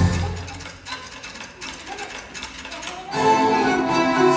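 Theatre orchestra music dies away into a quieter stretch of rapid, irregular rattling clicks. The orchestra, with strings, comes back in loudly about three seconds in.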